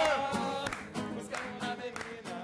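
A small live band playing with a male singer: a sung note is held and wavers for the first half-second or so. The band then plays on with regular percussive strokes, growing quieter toward the end.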